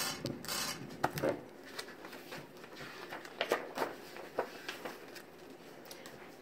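M&M's candies clicking and rattling on a glass tabletop as they are poured out and spread by hand: scattered, irregular small ticks.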